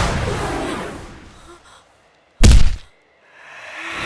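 Dramatic sound-effect hits from a TV drama soundtrack. A loud hit dies away over the first two seconds and is followed by a moment of silence. A sudden loud thud comes about two and a half seconds in, silence follows again, and a swelling sound rises near the end.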